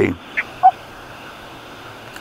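The tail of a spoken word, two brief faint blips, then a steady low hiss on a recorded telephone line between phrases.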